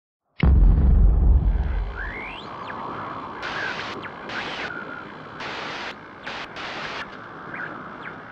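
GoPro logo intro sound effect: a sudden deep boom about half a second in that dies away over a couple of seconds, followed by a series of whooshing sweeps with rising and falling glides.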